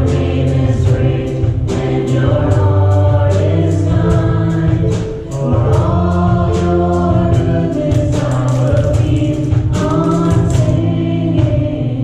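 Live worship song: women's voices singing a held melody with a band of keyboard, bass guitar and drums, the drums keeping a steady beat.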